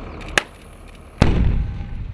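Detonation of a charge of less than 10 pounds of homemade explosives inside a school bus: a sharp click shortly before, then a sudden loud blast about a second in, followed by a continuing low rumble.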